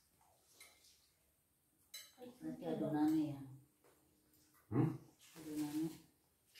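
A single sharp clink about two seconds in, then short wordless voice sounds, murmurs and hums, from people eating.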